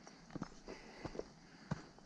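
A few faint footsteps on a dry dirt and stony trail, as short scattered scuffs and clicks.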